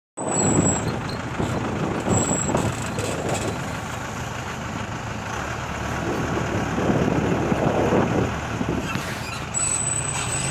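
Diesel engine running while the vehicle drives along the road, with a steady low rumble and wind buffeting the microphone in gusts. A thin high whine comes in briefly near the start and again near the end.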